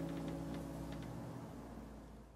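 The final strummed chord of an acoustic guitar ringing out and slowly dying away, with a few faint small ticks in the first second.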